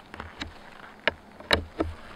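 Hex key turning a steel threaded insert into a hole in melamine-faced plywood: about five short metallic clicks and scrapes at uneven intervals, the loudest about one and a half seconds in.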